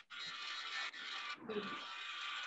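Colouring on paper: a colouring stick rubbed across the page in two long, even strokes, the second starting about a second in.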